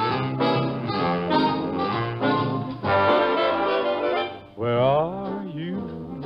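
Big-band dance orchestra with brass, trombone and trumpet among them, playing the introduction to a slow ballad. About four and a half seconds in the full band drops away to a softer passage with a gliding melody line.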